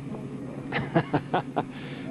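A man's soft chuckle: a few short breathy bursts starting about three-quarters of a second in, over low background noise.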